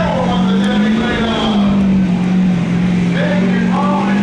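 Chevrolet Silverado heavy-duty diesel pickup under full load pulling a weighted sled, its engine held at high revs in a loud, steady drone that wavers slightly in pitch as it digs in. A public-address announcer talks over it near the end.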